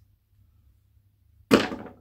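Near silence, then, about one and a half seconds in, one sudden clack as tossed rings land on a cardboard shoebox and a small jar. It dies away over about half a second.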